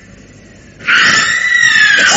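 A woman's long scream, starting abruptly about a second in and slowly falling in pitch: a character falling through an open door into a ravine.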